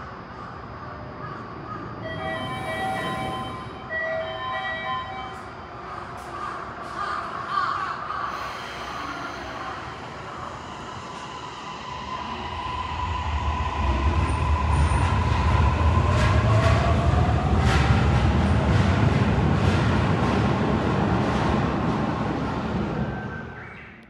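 A few short electronic chime tones a couple of seconds in, then a Toei Mita Line 6500-series electric train pulls away from the platform. From about twelve seconds in its rumble builds, with a motor whine rising in pitch as it speeds up, before the sound fades out at the end.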